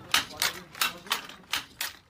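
Hand-operated wooden handloom weaving, its shuttle and beater clacking in a steady rhythm of about three sharp clacks a second, growing fainter near the end.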